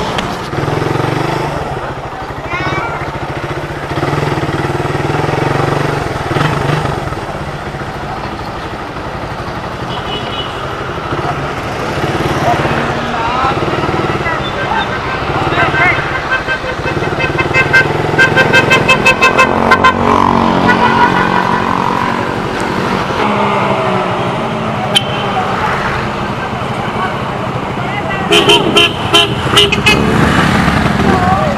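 Suzuki motorcycle engine running at low speed among other motorcycles, with a run of quick horn beeps a little past halfway and another run near the end.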